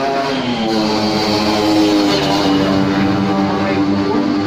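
Motor vehicle engine on the road, its pitch falling in the first second as it passes, then running at a steady pitch.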